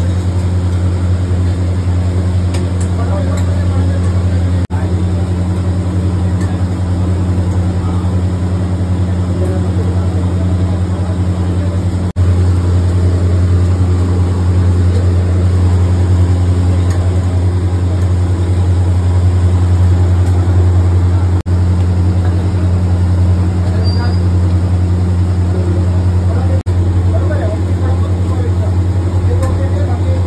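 A loud, steady, low machine hum with voices in the background. The sound drops out for a moment four times.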